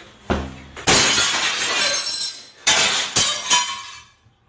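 The glass door of a wooden display cabinet shatters when a kicked football hits it. A short thump comes first, then a loud crash of breaking glass about a second in, with more crashes of falling glass over the next two seconds.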